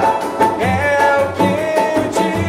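Pagode-style samba song: a man singing the melody over banjo, cavaquinho, pandeiro and a large hand drum keeping a steady samba beat.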